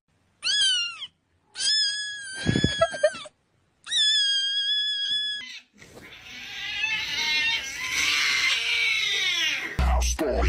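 Cat meme sound clips: three drawn-out cat meows, the first short and the next two held for nearly two seconds each, then an angry cat's harsh, noisy yowl lasting about four seconds. An electronic beat starts right at the end.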